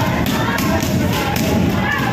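Taekwondo kicks landing on handheld kick paddles again and again, several pairs training at once, over people's voices.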